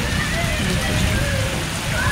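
Heavy rain falling on a waterlogged street, a steady even hiss with a low rumble underneath, with faint voices in the background.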